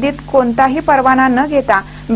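Speech only: a narrator's voice talking without pause, over a faint steady low hum.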